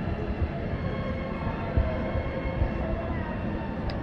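Dining-room background noise: a steady low rumble with faint music and distant voices underneath.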